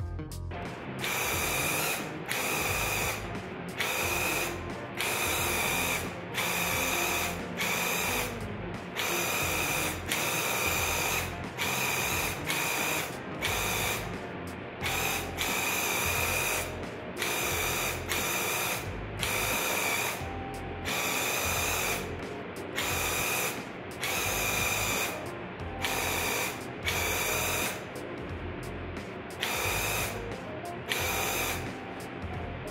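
Graco Ultra QuickShot cordless handheld airless paint sprayer running in repeated bursts of about a second each as the trigger is pulled and released during spraying. Each burst is the rapid buzz of its motor-driven piston pump with a steady high whine and the hiss of the spray.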